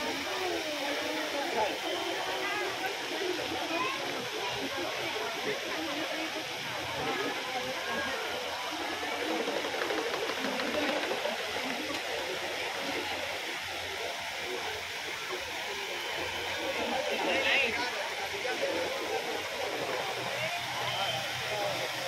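Fountain jets spraying and splashing into a pond in a steady rush of water, under the continuous chatter of a large crowd of people.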